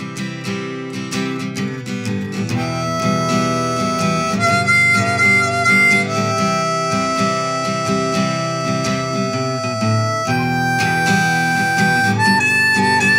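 Acoustic guitar strumming, joined about two and a half seconds in by a harmonica in a neck rack playing long held notes that change every couple of seconds: an instrumental harmonica break in a folk song.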